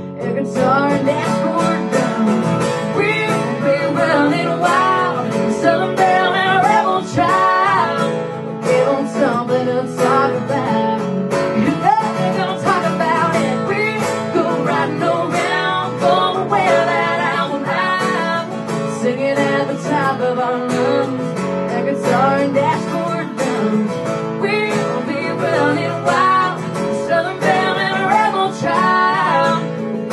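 A live acoustic duo: two acoustic guitars strummed steadily, with a woman singing lead and a man joining in on harmony.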